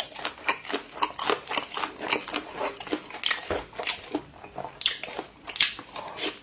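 Close-miked eating sounds: a mouthful being chewed with quick wet smacks and small crunching clicks, several a second, the chewing going on steadily throughout.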